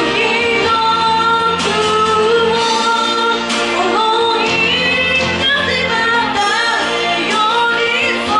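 A woman singing a sustained, gliding pop melody into a handheld microphone, live, over a continuous instrumental accompaniment.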